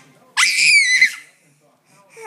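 A baby's single shrill, high-pitched squeal of glee, lasting under a second and starting about a third of a second in.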